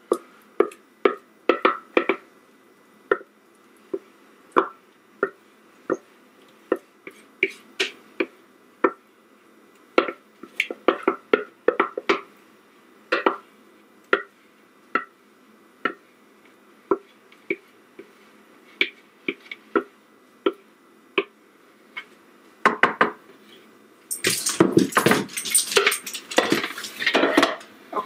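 Spatula scraping thick beer-bread batter out of a mixing bowl into a loaf pan: irregular short scrapes and taps against the bowl. About three-quarters of the way through, a louder, denser run of clattering noise takes over.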